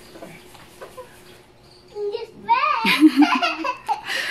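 A young child's high-pitched excited squealing, the voice sliding up and down in pitch, starting about halfway in.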